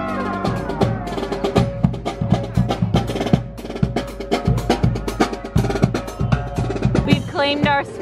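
Marching band drum cadence: snare drum and bass drum beating out a steady march, just after the brass section's held chord bends down and stops.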